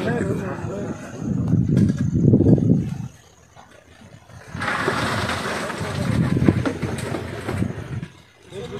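Indistinct talking in the first few seconds, a brief lull, then about three seconds of a steady rushing noise with voices underneath.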